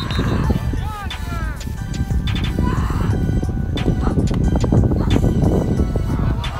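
Strong wind buffeting the microphone in a steady low rumble, with spectators and coaches shouting from the sideline during the play, loudest in the first second or so.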